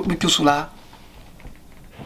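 A man's voice speaking for the first half second or so, then a pause with only room tone and a few faint small clicks.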